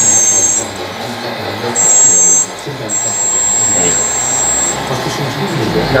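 The hydraulic pump of a 1/14.5-scale RC forklift runs in bursts with a high-pitched electric whine as the mast and forks are worked: a short run at the start, another about two seconds in, and a longer one from about three seconds to near the end.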